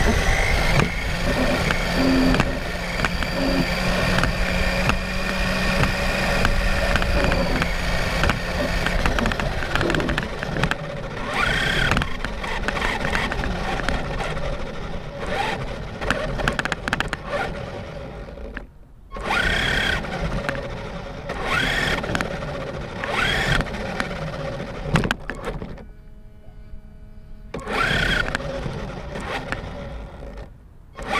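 Electric RC car driving over concrete, heard from a camera mounted on it: a loud, rough rattle and rumble of tyres and chassis, with a motor whine that rises and falls in bursts. It briefly cuts out a couple of times, the stop-and-go pausing that the owner blames on a failing battery or motor.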